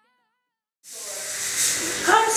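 Silence for most of the first second, then a sudden hissing noise that swells in loudness.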